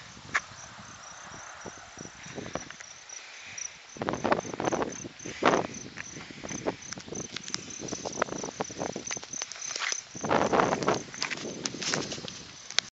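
An insect chirping steadily at a high pitch, about four short chirps a second. Irregular spells of rustling and crackling come over it, the loudest about four to six seconds in and again near the end.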